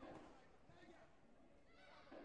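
Faint shouting voices, high and bending in pitch, with a louder burst at the start and another near the end, as the fighters exchange a scoring flurry.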